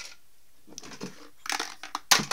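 Small plastic doll-furniture pieces being handled and shifted: a run of clicks and crunching rattles that starts under a second in and gets louder near the end.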